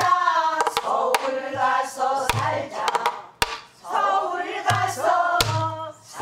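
A woman singing pansori in long, held and bending notes while she plays a buk barrel drum herself. Sharp stick strokes and low drum thumps mark the beat several times under the sung line.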